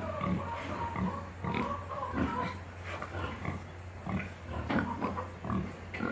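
Pigs grunting at close range, a run of short, irregular grunts from several animals.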